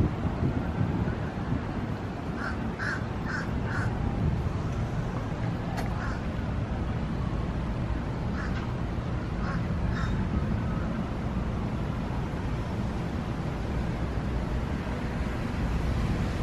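Crows cawing: a run of four quick caws a few seconds in and a few scattered ones later, over a steady low rumble of outdoor background noise.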